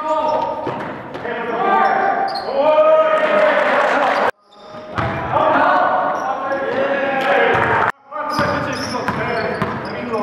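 Background song with a lead vocal holding long, gliding notes, cut off abruptly twice, about four and eight seconds in.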